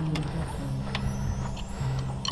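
Distant brass instruments holding long, low notes, with the pitch stepping down about halfway through, and a few light clicks over them.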